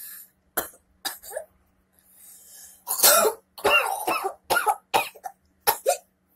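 A woman coughing in a fit: two short coughs, a breath in, then a louder run of harsh repeated coughs from about three seconds in.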